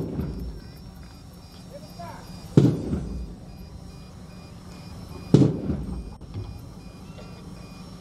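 Three heavy thuds, evenly spaced about two and a half seconds apart, each followed by a short ringing echo.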